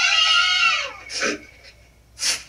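Cartoon child characters shouting "Captain!": a long, high-pitched shout that falls slightly and fades within the first second, then a shorter shout a moment later.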